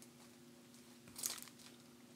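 A short crinkle of plastic a little over a second in, as gloved hands handle a trading card in its clear plastic holder, over a faint steady hum.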